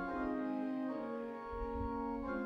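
Organ playing a slow hymn in sustained chords, the chord changing about once a second.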